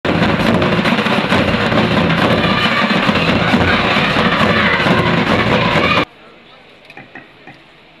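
Nagara kettle drums and a barrel drum beaten fast under voices singing a jadur folk song, loud and dense. The sound cuts off abruptly about six seconds in, leaving a low murmur with a few faint knocks.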